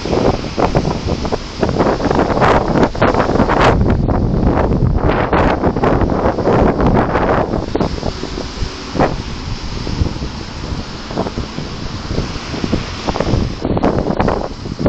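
Wind blowing on the camera microphone in loud, uneven gusts.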